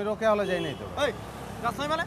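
A man speaking Bangla in conversation, with the low sound of a car passing behind.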